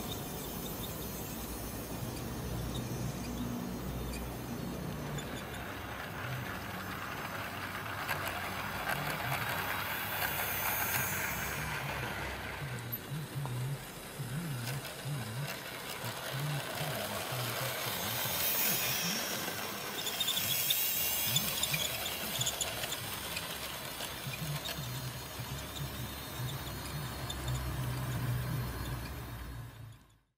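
00 gauge model train running along the track: motor hum and wheels on the rails, growing louder about two-thirds of the way through.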